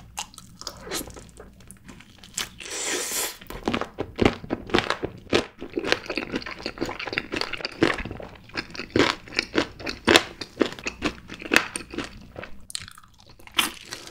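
Crunching and chewing of sauced Korean fried chicken drumsticks: a bite into the crisp coating a couple of seconds in, then many crackly crunches as it is chewed, and another bite near the end.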